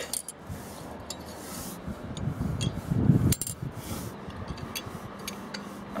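The induction (Ferraris) discs of a Reyrolle TJV electromechanical protection relay being turned by hand: a soft rubbing and scraping, louder in the middle, with scattered light clicks as the mechanism moves and the trip flag indicators drop.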